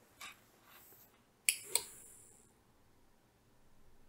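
Two sharp clicks about a quarter second apart, with a softer click just before them.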